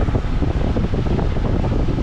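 Wind buffeting the microphone on a boat underway, over the steady rush of water and the boat's running noise.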